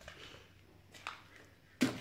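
Quiet shop room tone with faint handling noise from a handheld camera and a rubber flap held in the hand, and one light click about a second in.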